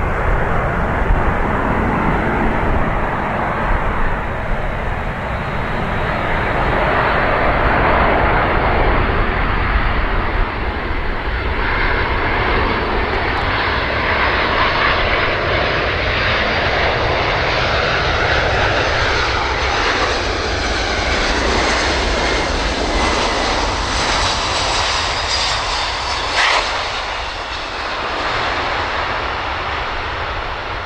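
A C-17 Globemaster III's four Pratt & Whitney F117 turbofan engines on final approach and landing: a steady, loud jet roar with a thin whine that rises slowly in pitch as the aircraft closes in. A brief, sharper sound stands out about three-quarters of the way through.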